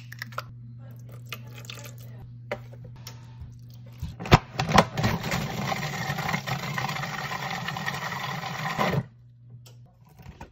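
Food processor motor running for about four seconds, blending egg and cheesecake batter, then cutting off suddenly near the end. Before it starts, a cracked egg and a few sharp clicks and knocks.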